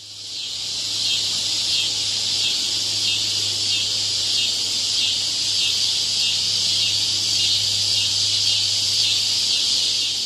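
A chorus of cicadas: a very loud, steady high-pitched buzz with a fast pulsing texture, swelling in over the first second, with a low steady hum underneath.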